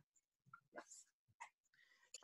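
Near silence, with a few faint, brief sounds around the middle.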